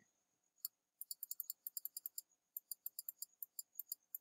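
Computer mouse clicking rapidly and faintly: a single click, then two quick runs of about eight clicks a second with a short pause between them, and a last couple near the end.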